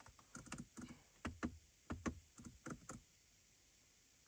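A run of short, irregular clicks from a BMW iDrive rotary controller being turned and pressed. The clicks stop about three seconds in.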